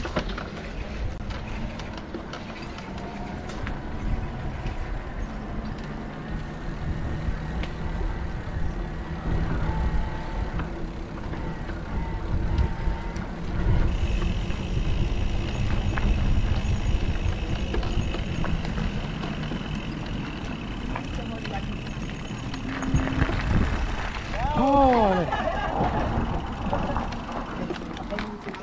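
Wind rushing over an action camera's microphone and tyre rumble from an electric mountain bike rolling down a paved lane. A steady high whine joins about halfway through, and a few short falling squeals come near the end.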